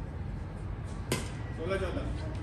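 A badminton racket strikes the shuttlecock once, a single sharp crack about a second in, followed shortly by a brief call from a player, over a steady low rumble.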